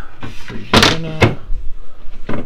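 A lid on a galley countertop fridge is shut with a thump, followed by a lighter knock about half a second later.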